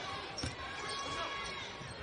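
A basketball dribbled on a hardwood court, one clear bounce about half a second in, over a steady wash of arena crowd noise.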